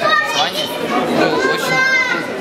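Speech: a young voice talking over the chatter of children behind it.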